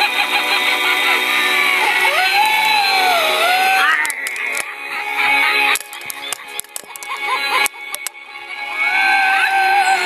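A Halloween pirate skull decoration playing a warbling, electronic spooky tune with gliding pitch through its small speaker. About four seconds in the tune drops away and a few sharp clicks are heard, then it returns near the end.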